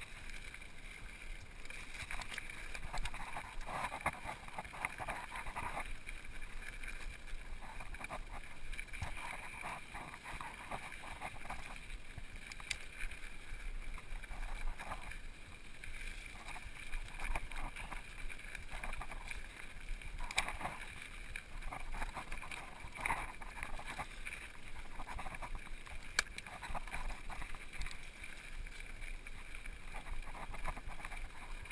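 Mountain bike rolling fast down rocky dirt singletrack: steady wind and tyre noise, with stretches of rapid rattling and clicking and a few sharp knocks from bumps.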